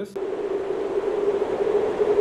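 An edited-in sound effect: a loud, steady static-like hiss with one steady mid-pitched tone running through it, cutting in suddenly right at the start.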